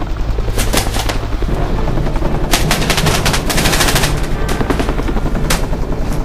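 Paintball markers firing in rapid runs of sharp pops: a short flurry about a second in, then a longer dense volley in the middle, with scattered single shots.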